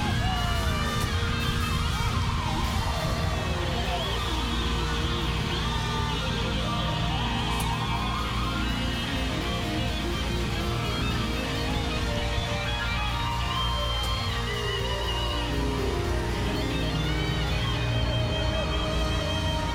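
Live band music with electric guitar playing bending, gliding lead lines over a steady low bass.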